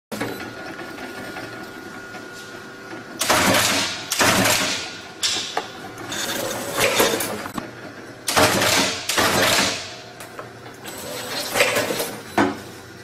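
Brackett Utility book-taping machine running in about six noisy bursts of a second or less each as books are fed through, its start switch tripping it on and off, over a steady hum.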